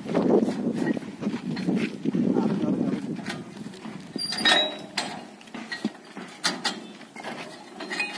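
Indistinct men's voices talking, then a few sharp metallic clinks and knocks from about halfway in, as the steel rack and box fittings of a motorcycle are handled.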